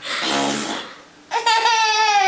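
A short breathy laugh, then a baby's long high-pitched squeal whose pitch falls slightly.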